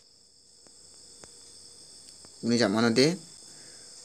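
Quiet background with a faint, steady high-pitched trill or whine. A man's voice briefly says "color, color" a little past halfway.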